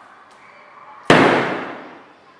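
A full, unopened aluminium drink can slammed down hard onto a table about a second in: one loud bang with a short ringing tail. The pointed lump of chewing gum under it is flattened rather than driven through the can.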